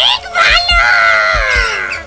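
A woman's loud, exaggerated laugh, high at first and sliding down in pitch over about a second and a half, over background music with a quick low beat.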